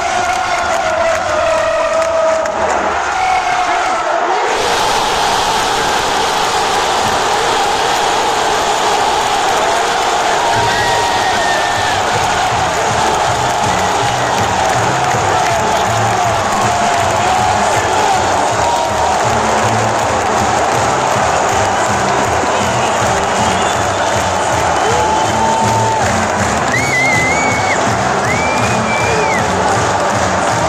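Football stadium crowd erupting in a sudden roar about four seconds in as the home side scores a late goal, then sustained cheering and shouting. Music with a steady beat joins in from about ten seconds on.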